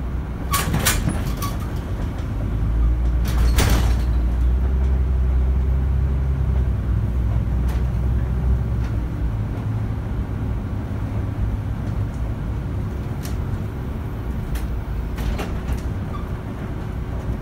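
Volvo city bus driving, heard from inside the cabin: a steady low engine and drivetrain rumble that grows heavier from about two and a half seconds in, then eases off again. A few sharp rattles or knocks come from the bus body, two in the first four seconds and another near the end.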